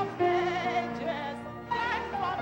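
A woman singing a hymn solo with a marked vibrato, over an instrumental accompaniment holding long notes.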